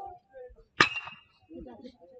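Metal baseball bat hitting a pitched ball about a second in: one sharp ping with a brief ringing tone.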